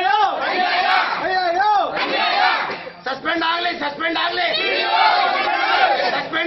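Crowd of men shouting protest slogans together, many voices overlapping, with a brief pause about three seconds in.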